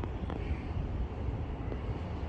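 Low, unsteady outdoor rumble that stays strongest in the deep bass and flickers in level throughout, with no distinct events.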